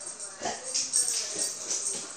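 A dog whining in a wavering pitch, with a light irregular metallic jingling through it.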